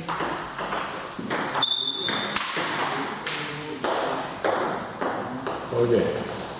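Table tennis rally: a celluloid ball clicks sharply off the rubber paddles and the table, about two hits a second. About two seconds in there is a short high-pitched tone.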